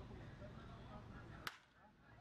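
Baseball bat striking a pitched ball: one sharp crack about one and a half seconds in, over faint background murmur.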